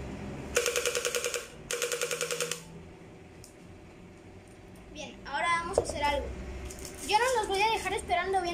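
Battery-powered gel blaster's motor and gearbox cycling in two bursts of just under a second each, a rapid buzzing rattle of about a dozen pulses a second, fired dry before its gel-ball magazine is attached.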